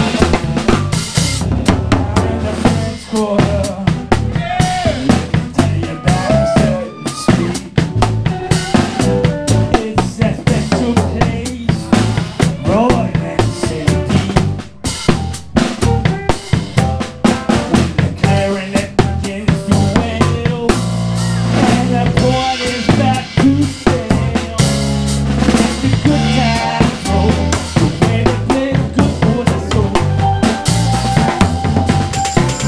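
Live band playing a New Orleans-style groove, with a drum kit close up: snare with rimshots, bass drum and cymbals, over electric bass, electric guitar and organ.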